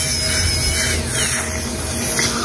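High-speed dental air-turbine handpiece running steadily as it grinds down a metal basal-implant abutment, with a thin whine and a hiss. Its pitch dips slightly about halfway through.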